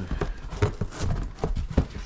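Shoes and boots being rummaged through in a cardboard box: a run of irregular knocks and thuds as they are shifted and bump against each other and the box sides.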